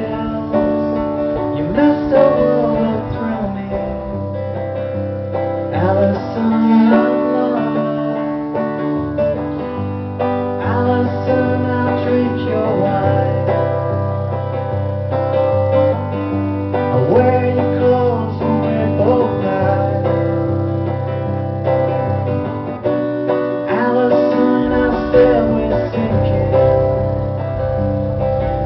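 Acoustic guitar strummed steadily through an instrumental passage, its chords ringing on between strokes, amplified through a live PA.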